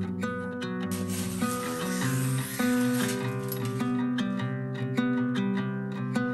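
Background music: a gentle instrumental piece of plucked-string notes that change every fraction of a second.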